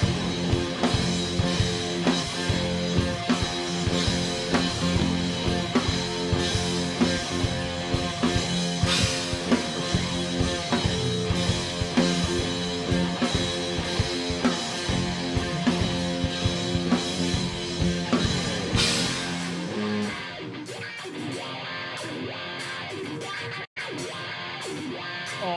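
Live rock band playing loud: distorted electric guitars, bass and a pounding drum kit. About nineteen seconds in the full band drops away to a quieter guitar part with steady, evenly spaced cymbal ticks, and the sound cuts out for a split second just before the end.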